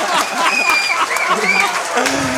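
Club audience laughing and applauding, many voices calling out over the clapping.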